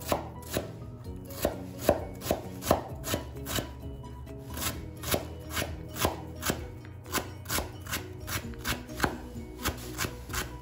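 Chef's knife dicing a carrot on a wooden cutting board, the blade knocking against the board about two to three times a second in an uneven, steady run.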